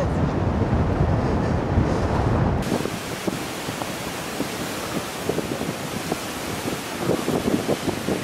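Wind noise on the microphone, a heavy low rumble, then after a cut about two and a half seconds in, a steady hiss of wind and sea.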